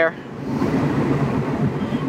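Road noise inside a moving car: engine and tyre noise as a steady rumble, swelling over the first second and then holding level.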